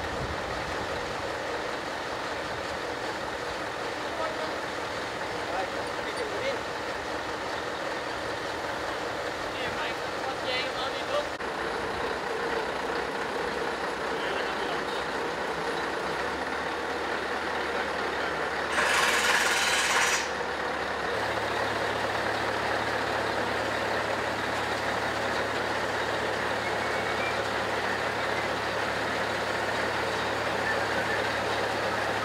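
A heavy truck's engine running steadily, with a loud hiss lasting about a second about two-thirds of the way through.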